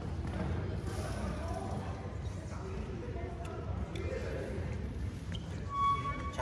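Indistinct voices echoing around a large gym hall over a steady low rumble, with a short high squeak near the end.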